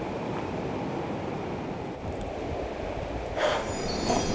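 Steady outdoor seaside background noise, a low even rush from wind and surf, with a brief louder sound about three and a half seconds in.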